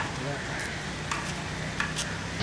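Steady background hiss of outdoor ambience with a faint low hum, broken by a few faint clicks.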